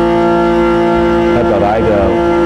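A morin khuur (Mongolian horse-head fiddle) bowed on one long, steady held note, the long tone that opens the piece. A man's voice starts speaking over the note near the end.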